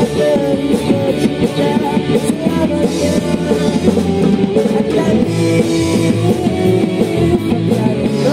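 Rock band playing live: electric guitars and a drum kit.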